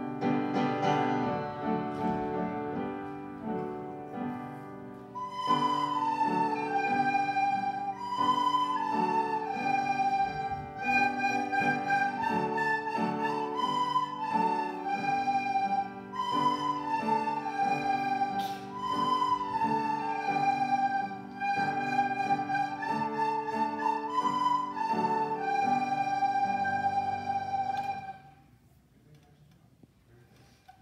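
A class of children playing recorders together in unison, a simple melody of short held notes, over a piano accompaniment that plays alone for about the first five seconds. The piece ends about two seconds before the end.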